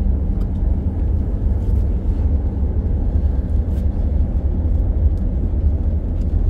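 A ship's engine and hull running under way: a steady low rumble with no change in pace.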